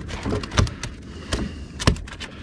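A few sharp knocks and clatters on a fibreglass boat deck as a freshly landed flounder is handled in a landing net, the loudest knock near the end, over a low rumble.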